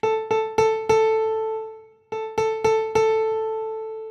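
Piano preset on Yamaha Montage and MODX synthesizers: a single note struck four times in quick succession, each strike louder than the last, left to ring out, then the same four rising strikes again about two seconds in. The strikes climb to full velocity, where the player hears the sound open up differently on the two keyboards.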